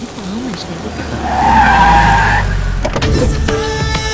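A vehicle pulls up with a tyre screech lasting about a second, over a rising engine rumble. Music with sharp rhythmic hits comes in near the end.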